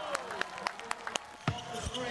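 A basketball bouncing on a hardwood court: several sharp bounces at an uneven pace, with brief shouts from players.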